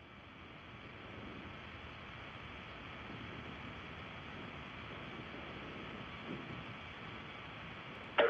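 Faint, steady roar of a Soyuz-FG rocket's first-stage engines and four strap-on boosters in powered flight, heard from far away. It rises a little over the first couple of seconds and then holds even.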